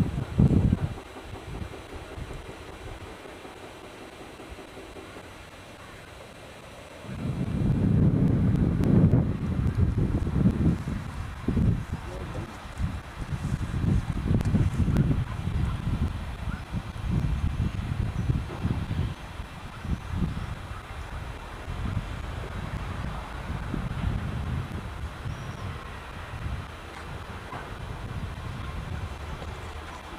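Wind buffeting the camcorder microphone in irregular gusts, starting suddenly about seven seconds in. Before that it is quieter, with a faint steady hum.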